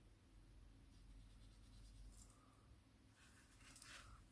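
Near silence: room tone with faint, soft rustles of brush and kitchen paper, strongest near the end.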